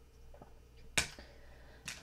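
A single sharp click about a second in and a weaker one near the end, over quiet room tone with a faint hum.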